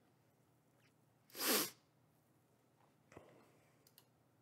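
A man's single short, loud burst of breath, like a sneeze, about one and a half seconds in. A faint tap or click follows near the end.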